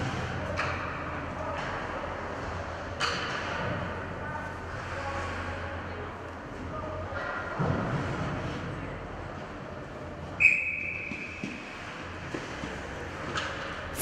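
Ice rink ambience during a stoppage in play: a steady low hum, faint distant players' voices and a few knocks of sticks on the ice. About ten seconds in, a referee's whistle gives one short, high blast.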